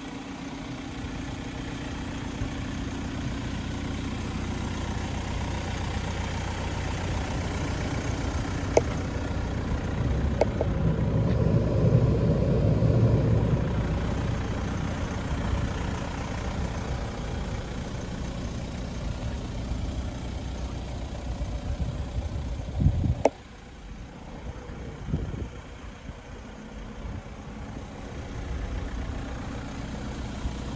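Hyundai estate car's engine idling steadily, heard from beside the car. The hum swells for a few seconds near the middle, a few sharp knocks sound, and the level drops suddenly after a knock about three-quarters of the way through.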